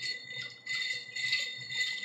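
Ice cubes clinking and rattling against the sides of a glass as a drink is stirred with a straw, on and off from about half a second in.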